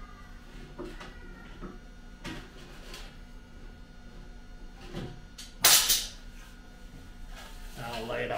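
A long slotted square steel tube being handled: a few light knocks, and one short, much louder clatter a little past halfway.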